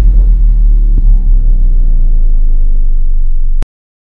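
Logo intro sound effect: a loud, sustained deep bass rumble with faint tones above it, cutting off suddenly about three and a half seconds in.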